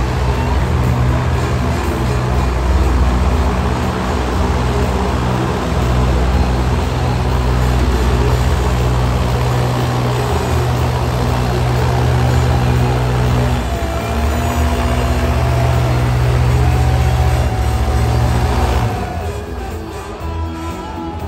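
An airboat's engine and caged propeller running loud and steady with a deep drone, then dying away about a second before the end.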